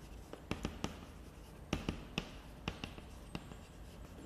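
Chalk writing on a blackboard: a run of sharp taps and short strokes in a few small clusters as characters are written.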